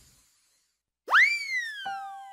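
A cartoon whistle sound effect about a second in, after a short silence: its pitch shoots up quickly, then glides slowly down. Near the end the first notes of a tune begin.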